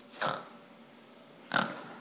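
A hound dog's single short snort, starting suddenly about one and a half seconds in and fading quickly.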